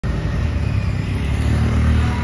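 Low, steady engine rumble of motor traffic, growing a little louder near the end.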